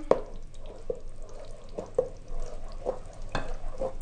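Wooden spoon stirring thick blended zucchini purée in an enamel pot to mix in vinegar. Wet squelching is punctuated by soft scrapes and knocks of the spoon, roughly one a second.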